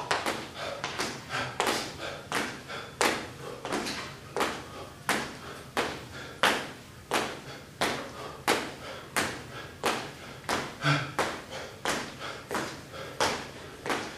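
Feet landing on a hard floor in a steady rhythm, about two thuds a second, from a man doing standing knee-to-elbow exercises.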